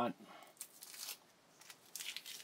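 Strip of Scotch tape being peeled off the metal body of a cane cutter: a faint crackly tearing lasting about a second, then a few light clicks near the end.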